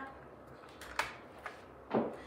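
Light clicks and a knock as an end cap is fitted onto the end of a shade's headrail track: a sharp click about a second in, a faint one soon after, and a louder knock near the end.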